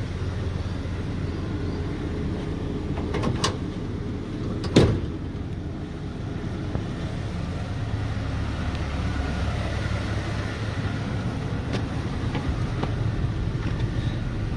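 Ford Ranger pickup tailgate being opened: two light latch clicks, then a single loud clunk a little over a second later as the tailgate drops open. A steady low rumble runs underneath.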